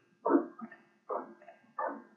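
A dog barking repeatedly: three short barks, evenly spaced about three-quarters of a second apart.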